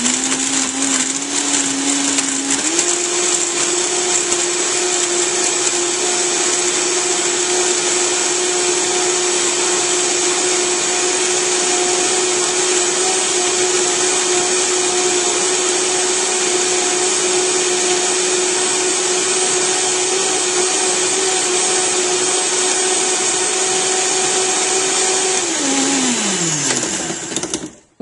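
Vitamix blender motor running on its variable-speed dial. It steps up to a higher speed about three seconds in, runs steadily, then winds down and stops near the end. Solid bits of raisin and cacao nib are bumping around in the jar as it blends a thick frozen-banana and oat smoothie.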